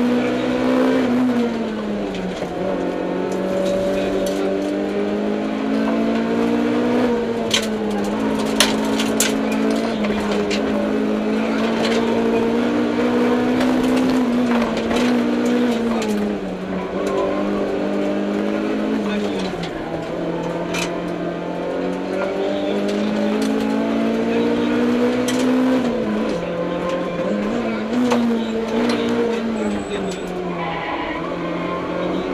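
Mitsubishi Mirage (CJ4A) rally car's engine heard from inside the cabin at full stage pace, its revs climbing through each gear and dropping sharply at shifts and braking, several times over. A few sharp clicks come roughly a quarter of the way in.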